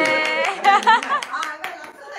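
Quick hand claps, about five a second, under a person's voice holding a long high note that breaks into a loud wavering cry just before the middle and then fades out.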